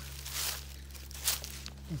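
Footsteps and rustling through dry grass and melon vines, with a soft brushing about half a second in and a short crackle after a second, over a steady low hum.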